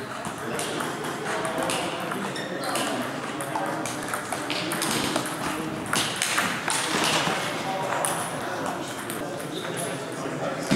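Table tennis balls clicking off paddles and tables in quick, irregular strokes, from the near rally and from several other tables at once. A murmur of voices runs underneath.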